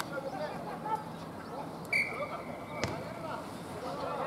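A referee's whistle blown once in a single steady blast lasting about a second and a half, starting about two seconds in; a sharp knock sounds partway through it. Players' voices call out around it.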